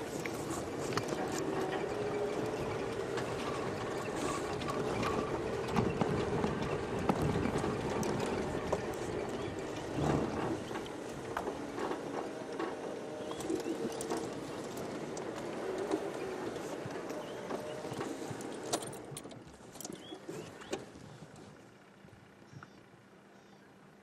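Open safari vehicle driving on a rough dirt track: a steady wavering engine note with knocks and rattles over bumps. About 19 to 21 seconds in it slows and stops, and the sound falls away to much quieter.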